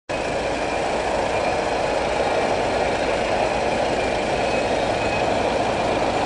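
Steady drone of road traffic, with a motor vehicle engine running.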